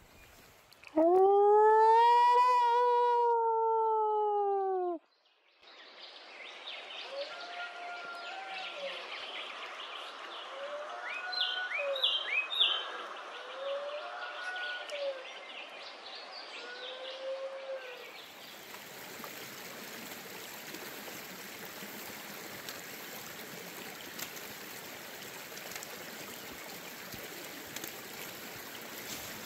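Dingo howling: one loud, long howl of about four seconds that rises, holds and then falls away. Fainter short calls and bird chirps follow, and near the end the steady rush of a creek takes over.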